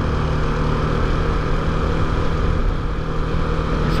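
Bajaj Pulsar 200NS motorcycle's single-cylinder engine running at a steady cruising speed, one even engine note under a constant rush of wind and road noise.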